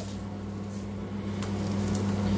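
A pancake frying quietly in butter in an enameled cast iron pan, with a steady low hum underneath. The spatula turns it over, giving faint taps against the pan in the second half.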